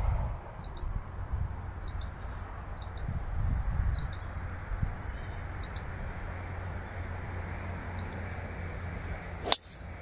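Wind rumbling on the phone's microphone while a small bird repeats a short double chirp; near the end, one sharp crack as a driver strikes a golf ball off the tee.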